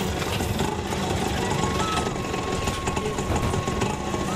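Auto-rickshaw engine running at idle, a steady fast low chugging.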